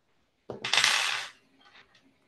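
A short, loud burst of clattering noise about half a second in, lasting under a second.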